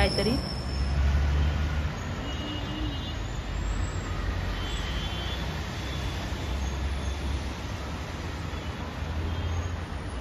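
Steady outdoor city ambience of distant road traffic, with low rumbles of wind buffeting the microphone now and then.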